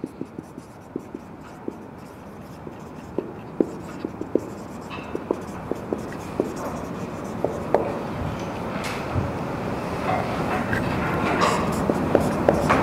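Marker pen writing on a whiteboard: a string of short squeaks and taps from the tip as words are written, over a steady background noise that grows louder toward the end.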